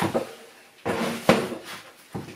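Clunks and knocks of a hard plastic router carry case being set down: one sharp knock at the start and a couple more about a second in.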